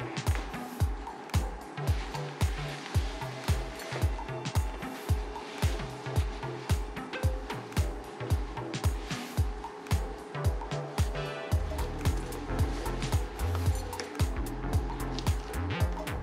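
Background music with a steady beat of about two strokes a second; a deeper bass line comes in about three-quarters of the way through.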